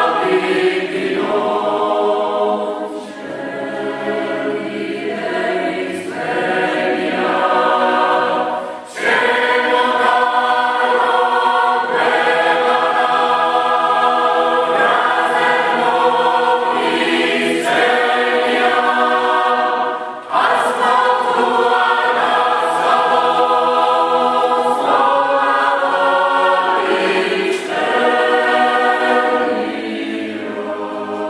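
Mixed choir singing a Georgian folk song a cappella in several voice parts, the phrases broken by short breath pauses about nine and twenty seconds in.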